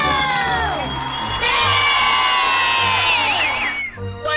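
Several cartoon children's voices whooping together over music. A short call slides down in pitch, then a long held note follows and falls away near the end.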